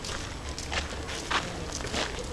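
Footsteps walking on a paved path, a few steps about half a second apart, over a low steady rumble.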